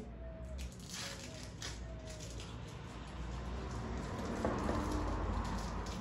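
Old tape being picked and peeled off a shovel handle by hand: faint scratching with a couple of brief squeaks in the first two seconds, then a steadier rustling noise that grows toward the end, over a low background rumble.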